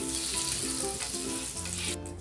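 Melted butter and olive oil sizzling on a hot griddle at about 350°F while a metal spatula spreads them around, with background music notes under the sizzle.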